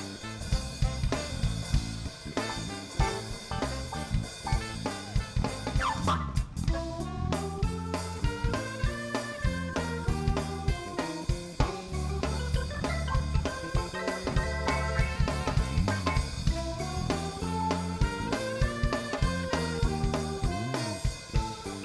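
Live jazz band playing with a steady beat: drum kit, electric bass guitar and keyboards, with a short gliding note about six seconds in.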